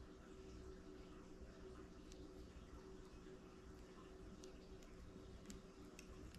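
Near silence: room tone with a faint steady hum, and a few faint small clicks in the last two seconds.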